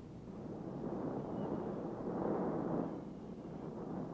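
Surf breaking on a rocky shore: a wave rushes in, swelling from about a second in and peaking near three seconds before falling away, over a low steady rumble.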